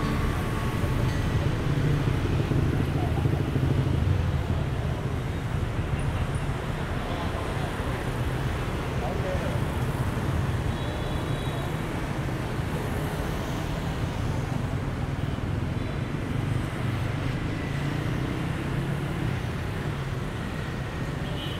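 Busy city street ambience: a steady rumble of car and motorbike traffic, with crowd voices mixed in.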